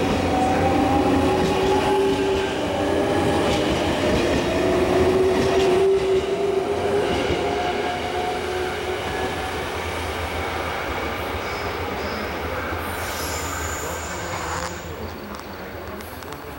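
A JR Series 383 limited express electric train pulls out of the station and gathers speed. Under its running noise a whine rises slowly in pitch, and the sound fades away as the last car moves off.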